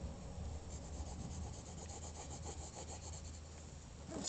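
Pencil shading on paper: faint, quick back-and-forth scratching strokes.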